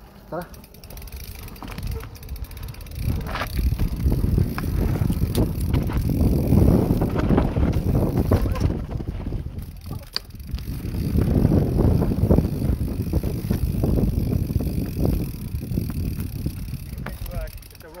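Mountain bike riding down a dirt forest trail: tyre rumble and clattering of the bike over roots and ruts, with wind buffeting the handlebar-mounted microphone, building up twice as the bike gathers speed.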